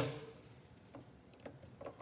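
A few faint, light ticks and taps of drawing instruments on a drawing board: a pen being set down on the ruler and a pair of compasses being set against the ruler's millimetre scale. The ticks come about a second in and again near the end.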